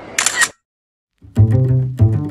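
A camera shutter click sound effect, then a moment of silence, then music with a deep string bass line starting about halfway through.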